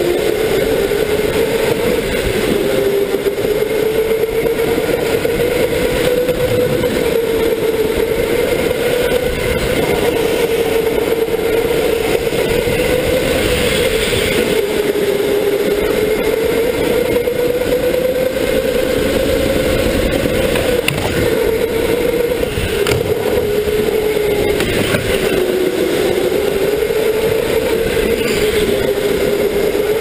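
Electric go-kart motor heard from a camera on the kart, a steady whine that rises and falls with speed through the corners, over tyre and track noise.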